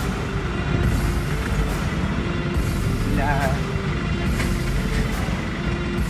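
Wind rushing over the microphone with rumbling road noise while moving along a road, with a brief voice about three seconds in.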